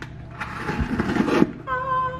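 X-Acto knife slicing through the tape on a cardboard box: a rough scraping rasp lasting about a second. A woman's short held vocal note follows near the end.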